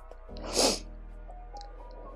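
A single short, sharp breath of air about half a second in, over soft background music with sustained tones.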